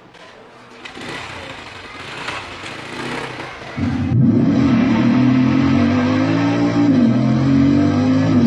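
A rushing noise builds over the first half, then a motorcycle engine runs steadily and loudly from about halfway, its pitch dipping briefly once near the end.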